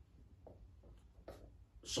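Faint rustling of a loose cloth tai chi suit as the arms move, a few soft brushing strokes in an otherwise quiet room.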